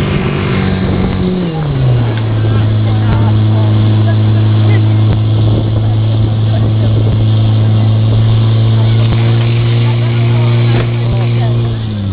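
Portable fire pump engine running at high revs, dropping to a lower steady speed about two seconds in and holding there while it pumps water out through the hose lines.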